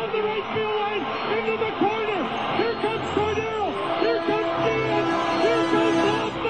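Music with a sung melody, the voice rising and falling in long held notes.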